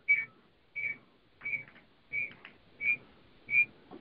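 Six short, high electronic beeps of one pitch, evenly spaced at about three every two seconds, heard over a telephone conference line.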